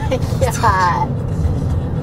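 Steady car-cabin rumble from the road and engine while driving, with a short high voice sound gliding down in pitch about half a second in: a passenger laughing.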